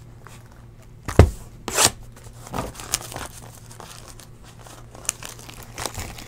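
A trading-card hobby box being handled and opened: crinkling and tearing of its packaging with scattered sharp rustles and knocks, the loudest a knock just after a second in.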